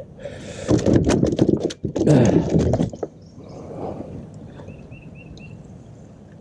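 Knocks and thumps on a plastic kayak's deck in two bursts of about a second each, as a speared carp flops about and is handled on the hull.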